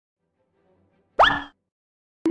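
A short intro sound effect: a single quick upward-sweeping 'bloop' about a second in, fading within a third of a second.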